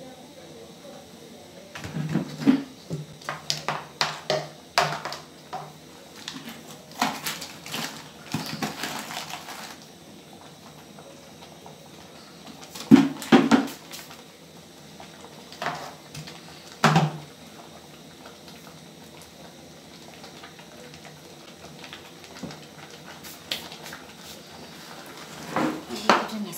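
Wooden spoon stirring curdled milk in an aluminium pot, knocking and scraping against the pot in bursts. The knocks come thick and fast for the first third, then in short clusters about halfway through and again near the end.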